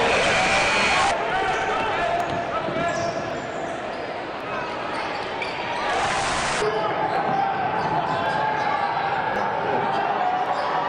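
Game sound from a college basketball arena: steady crowd noise with a bouncing basketball on the hardwood. The sound changes abruptly about a second in and again past six seconds, as one game clip cuts to another.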